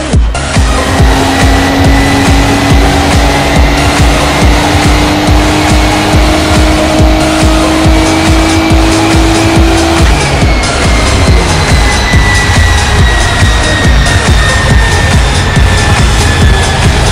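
Nissan 300ZX run on a chassis dynamometer: the engine and dyno rollers climb slowly and steadily in pitch through a full-throttle pull for about ten seconds, then wind down with a falling whine as the driver lifts. Electronic dance music with a steady beat plays over it.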